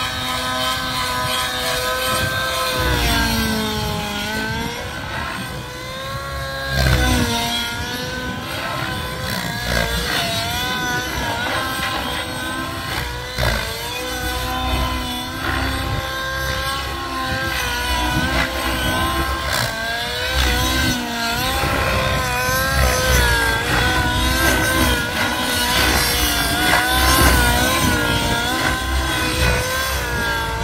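Goblin RAW 700 Nitro RC helicopter flying, its nitro glow engine and rotor blades running hard. The pitch keeps swinging up and down as it manoeuvres, with a deep dip a few seconds in and a louder rise shortly after.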